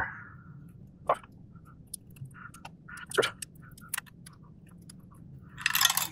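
Small scattered clicks and light scrapes of a plastic spudger working a ribbon-cable connector loose on an Xbox Series X board, the loudest click about three seconds in. A short rustle of handling near the end.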